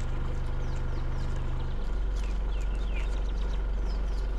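Safari vehicle's engine running at crawling speed, a steady low hum that drops to a lower pitch about two seconds in. Birds call over it with short, repeated falling whistles.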